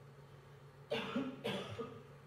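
A person coughing twice in quick succession, about a second in.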